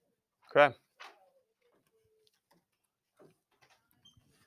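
A man's voice says a single 'okay' about half a second in. It is followed by near quiet with a few faint, short room sounds.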